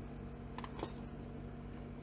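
Steady low background hum with a few faint clicks a little under a second in, as a liquid glue pen and card are handled on a craft mat.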